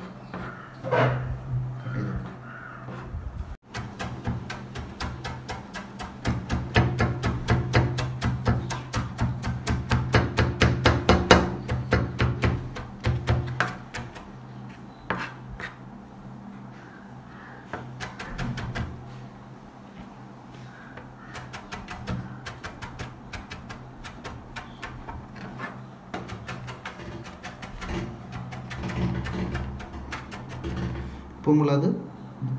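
Knife rapidly chopping and mincing ginger on a plastic cutting board: fast runs of blade strikes, several a second, densest in the first half and again near the end.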